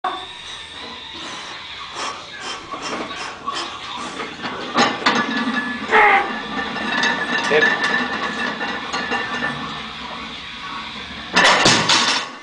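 Voices calling out during a heavy deadlift pull, among scattered clicks, then the loaded barbell's iron plates landing on the platform with a loud clatter near the end.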